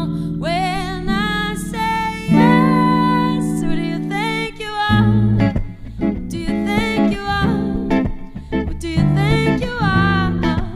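Live band music: a woman singing long, wavering held notes over archtop electric and acoustic guitars. About five seconds in, the sustained chords give way to shorter, plucked accompaniment.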